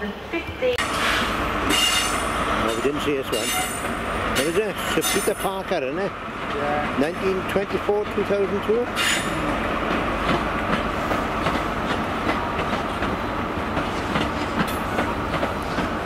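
InterCity 125 High Speed Train running slowly past: the Class 43 diesel power car's engine hums with a steady whine, and the wheels click over rail joints and pointwork as the Mark 3 coaches roll by.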